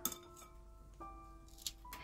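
Soft background music with held notes, under a few light clinks of a metal ice-cream scoop against a glass mixing bowl, the sharpest near the end.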